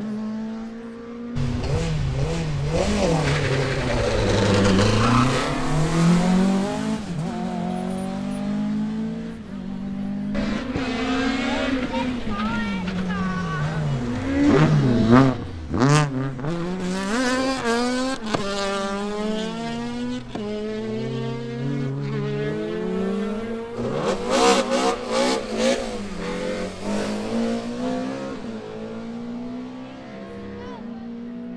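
Rally car engine, on a Honda Civic hatchback, revving hard, its pitch repeatedly climbing and dropping through gear changes and lifts off the throttle. It is loudest as the car swings around a tight turn about halfway through, and again near the end.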